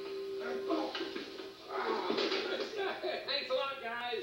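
Television programme sound played through a 1986 General Electric clock/radio/TV's small built-in speaker: voices and music running together.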